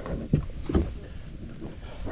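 Wind rumbling on the microphone and water slapping a small boat's hull, with a few faint knocks.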